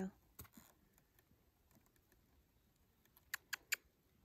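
Tongue clicks urging a horse to come: mostly quiet, with a couple of faint ticks about half a second in, then three quick sharp clicks near the end.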